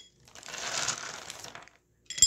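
Small plastic counting bears rattling against each other and a plastic zip-top bag rustling as a handful is scooped up. The dry clatter lasts about a second and a half.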